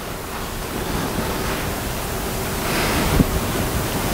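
Steady rushing room noise in a lecture hall, with no voice over it, growing a little louder in the second half.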